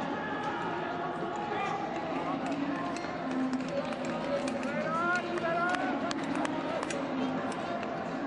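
Voices echoing around an indoor speed skating oval: people calling out over a steady crowd hubbub, with scattered sharp clicks.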